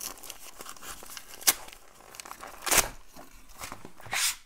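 Duct tape and paper wrapping being torn and crinkled off a padlock, with two sharper rips, about a second and a half and nearly three seconds in.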